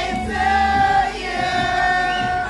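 A group of voices singing together in chorus, holding two long notes one after the other.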